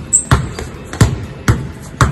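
Basketball dribbled hard on a hard floor during a combo dribbling drill, about five sharp bounces in the two seconds, each with a short ring.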